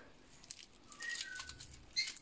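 Faint rustling and a few soft clicks of a hand handling lettuce leaves and placing them into a hamster's ceramic food bowl, with a brief faint high tone about a second in.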